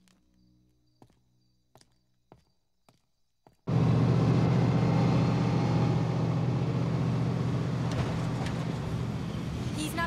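A few faint clicks, then suddenly, a little over a third of the way in, a loud, steady car engine and road noise from a police car being driven at speed. It eases off slowly.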